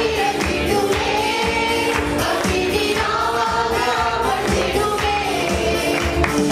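Church worship group singing together into microphones, a woman's voice leading, over electronic keyboard accompaniment with a steady beat.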